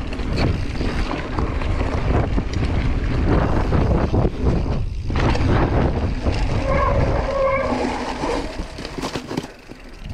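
Wind buffeting the mountain bike's camera microphone, with tyres rumbling over a dirt trail at speed; it starts suddenly and dies away over the last couple of seconds as the bike slows.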